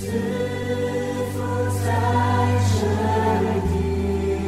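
A choir singing a Christian worship song over a held low accompaniment.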